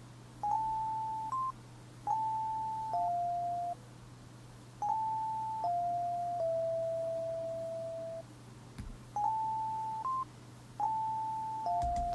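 Electric piano from Ableton Live's Electric instrument, 'Keys Mellow' preset, playing a MIDI clip: a slow line of soft single notes in five short phrases, mostly stepping down, one held for about two seconds. A steady low hum lies underneath.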